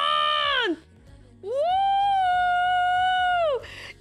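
A woman's high-pitched wordless vocal sound: a short held note that falls off, then, about a second and a half in, a long steady held note lasting about two seconds that drops away at the end.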